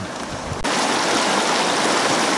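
Fast, shallow mountain stream rushing over and around rocks: a steady, even rush of water. It jumps up in loudness suddenly about half a second in.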